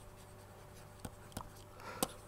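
Faint handwriting sounds of a stylus on a tablet: a few soft ticks and scratches as a word is written, over a faint low hum.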